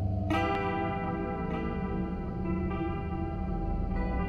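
Dark ambient music: a low sustained drone under ringing notes that start sharply and decay, one about every second and a bit.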